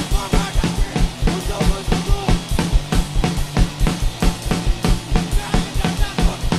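A live rock band playing a fast song in a small studio room: a drum kit driving a quick, steady beat of kick and snare, with electric bass and electric guitar through amplifiers.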